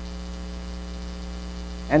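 Steady electrical mains hum, a low buzz with evenly spaced overtones.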